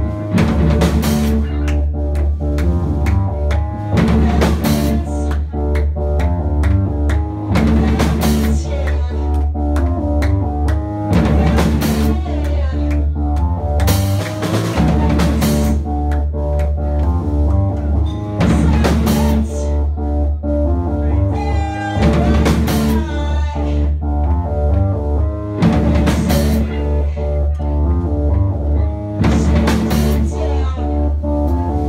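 A live rock band playing: synthesizer, electric bass and drum kit, with a heavy, steady bass line and a loud accent on the drums about every four seconds.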